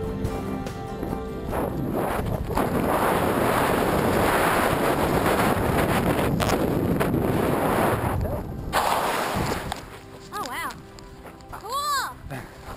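Loud, steady wind rushing over the camera microphone during the tandem parachute descent, cutting off suddenly about nine seconds in. Music fades out at the start, and brief voices follow near the end.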